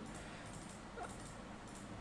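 Quiet room background noise with a single faint, short, high squeak about a second in.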